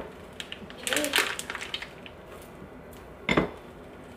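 Silicone spatula scraping thick filling out of a bowl and knocking against the bowl and piping bag as the bag is filled, with light clinks about a second in and one sharper knock past three seconds.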